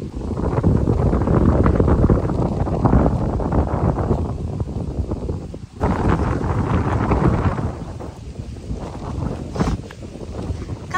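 Wind buffeting the phone's microphone: a loud, unsteady low rumble that drops out briefly about six seconds in and then comes back somewhat weaker.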